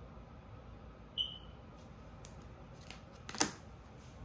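A tarot card being pulled from the deck and laid on a marble tabletop: a brief high squeak about a second in, a few faint card clicks, then a sharp slap as the card lands near the end.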